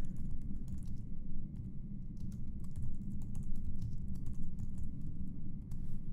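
Typing on a computer keyboard: a run of irregular key clicks as a line of code is entered, over a steady low background hum.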